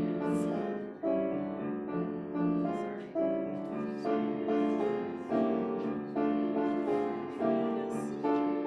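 Piano playing a hymn tune in an even, unhurried succession of chords, each note struck and then dying away.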